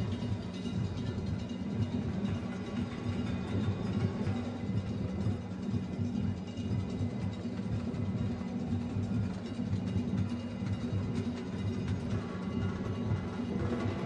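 Music led by low drums that pulse steadily throughout, with no commentary over it.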